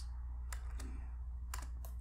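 A few short computer clicks, keys and mouse: one about half a second in, then a quick run of three near the end, over a low steady hum.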